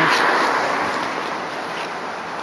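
A car driving past close by: its tyre and road noise is loudest at the start and fades steadily as it moves away.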